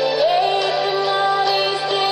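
A singer holding long, sliding notes into a microphone over backing music, karaoke-style.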